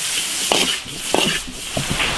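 Food sizzling in a hot iron wok as a metal ladle stirs it, with a few short scrapes of the ladle against the wok.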